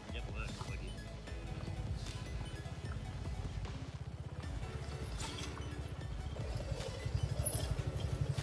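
Suzuki Gixxer SF 250's single-cylinder engine running steadily at low speed, a low pulsing engine note.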